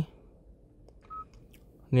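A single short, high beep about a second in: the touch-feedback tone of the car's infotainment touchscreen as a menu item is tapped, over faint background hall noise.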